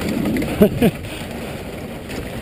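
Steady scraping hiss of wooden dog-sled runners over packed snow. About halfway in, a short two-part vocal call rises briefly above it.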